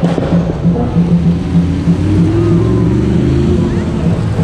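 A sports car engine picks up revs with a rising note about halfway through. Under it runs a fast, steady beat of parade music, about four or five pulses a second.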